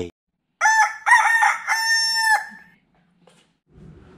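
Rooster crowing once, a cock-a-doodle-doo of several linked notes lasting about two seconds, used as a sound effect to mark the next morning.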